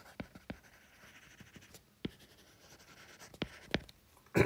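Stylus nib tapping and sliding on a tablet's glass screen while handwriting, with several sharp taps as the tip touches down, the loudest two near the end, over a faint scratching between strokes.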